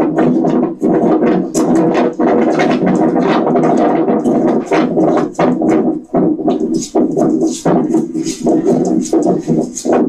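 Phone video played back over small laptop speakers: a loud, dense mix of music with a beat and voices.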